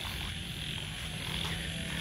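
Night-time chorus of frogs croaking over a steady, high-pitched drone of insects.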